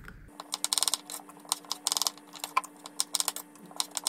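Knife slicing small potatoes on a wooden cutting board: a run of quick, irregular taps and clicks of the blade striking the board, over a faint steady hum.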